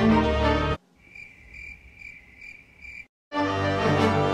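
Trailer music cuts off abruptly, then a cricket chirps five times, evenly spaced over about two seconds. After a brief dead silence the music comes back in.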